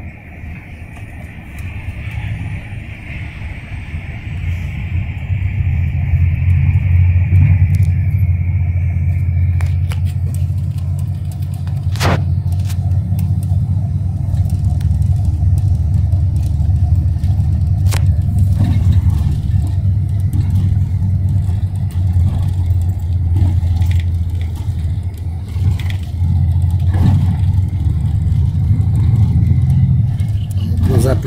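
Inside an intercity bus moving through traffic: a steady low engine and road rumble that grows louder over the first several seconds and then holds. A high steady whine fades out about ten seconds in, and a sharp click sounds about twelve seconds in.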